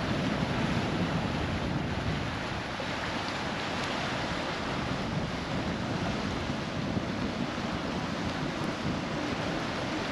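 Steady wind rushing over the microphone, mixed with the wash of choppy water.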